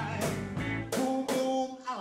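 Live blues-rock band playing, with electric guitars and a drum kit keeping a steady beat, and a male vocal line coming in near the end.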